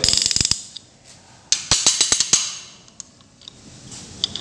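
Ratchet-type piston ring compressor being cranked tight around a piston with its key: rapid clicking of the ratchet pawl in two short runs, the second about a second and a half in. The band is squeezing the piston rings into their grooves so the piston can go into the bore.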